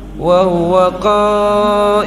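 A man chanting a Qur'anic verse in Arabic in melodic recitation style, his voice gliding at first and then holding long, steady notes.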